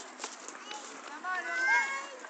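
Children's high-pitched voices shouting and calling out during a football game, the loudest call coming near the end. A few sharp knocks sound in the first half second.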